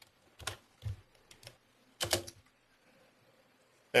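Scattered clicks of a computer keyboard and mouse: a few single clicks, then a louder double click about two seconds in, over quiet room noise.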